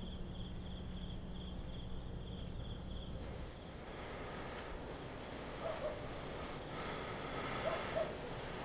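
Faint night ambience of insects chirping in a steady, quick pulsing trill, which stops about three seconds in and leaves only quiet background.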